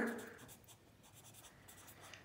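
Felt-tip marker writing on lined notebook paper: faint, quick strokes as a word is written.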